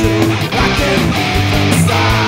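Heavy metal band playing an instrumental stretch on distorted electric guitars, bass guitar and drums. A held chord breaks off about half a second in and a guitar line of changing notes follows.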